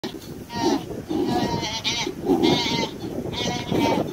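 Wildebeest calf bleating in distress: a series of high, wavering cries, each about half a second long. These are the calls of an injured calf caught by a leopard.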